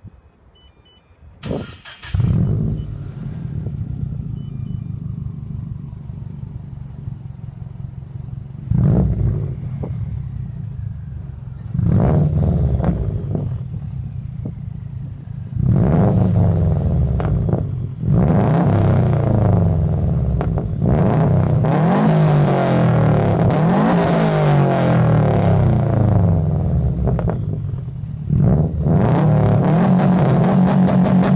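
2013 Subaru WRX's turbocharged 2.5-litre flat-four, running a catless downpipe and Cobb Stage 2 tune, is started about two seconds in and settles into an idle. It is then blipped twice and revved up and down repeatedly through the second half, with one last blip near the end.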